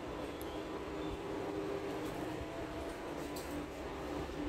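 Passenger elevator car travelling between floors with its doors closed: a steady low hum of the ride, with a faint thin whine in the middle.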